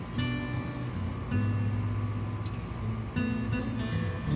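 Background music led by an acoustic guitar, with chords struck about three times and left to ring between.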